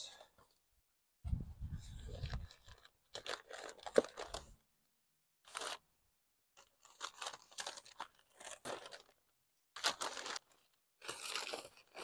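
Cardboard shipping box being opened and white packing paper pulled out and crumpled, in irregular bursts of rustling and crinkling with short pauses. A single sharp snap sounds about four seconds in.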